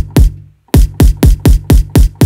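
Synthesized kick drum from the Kick 2 plugin played repeatedly, about eight hits, spaced out at first and then in a quick run. Each hit is a deep sine sub thump falling in pitch, with a short noisy rattle on top from a layered sample tail.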